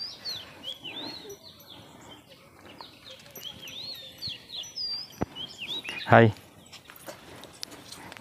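A songbird singing: short phrases of quick rising-and-falling whistled notes, repeated a few times. A single spoken word breaks in about six seconds in.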